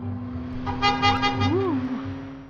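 Soundtrack sound effects: a steady low hum, joined a little before the middle by a bright, many-toned blare lasting about a second, with a short up-and-down pitch slide near the end.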